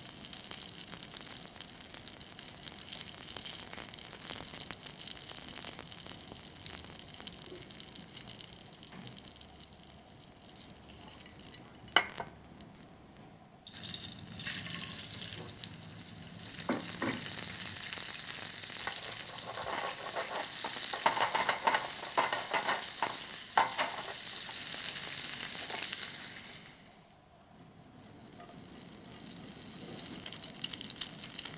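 Margarine sizzling in a non-stick frying pan as a hot dog bun toasts in it. After a cut comes louder, crackling frying as shrimp cook in the hot fat, with a sharp click about twelve seconds in. The sizzle drops away briefly near the end, then comes back.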